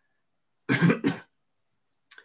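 A man clears his throat with a short cough in two quick parts, about two-thirds of a second in.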